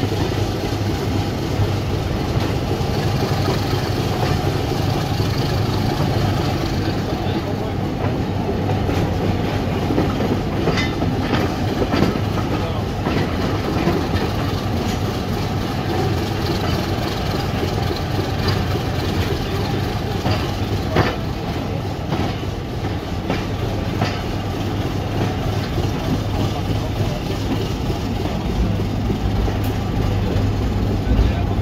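Diesel-hauled train on the move: a steady low drone with wheels clicking over rail joints now and then.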